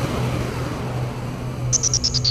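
Full-on psytrance intro built from synthesizer effects: a steady low drone under a hissing wash with faint sweeping glides. Near the end a rapidly pulsing high synth tone comes in and falls steadily in pitch.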